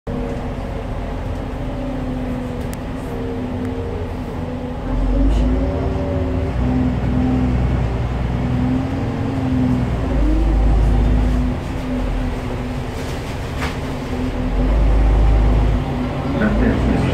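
SOR NB12 city bus driving, heard from inside the passenger cabin: the Iveco Tector six-cylinder diesel and ZF automatic gearbox give a steady running tone that drifts up and down in pitch. A deep rumble swells three times, about five, ten and fifteen seconds in.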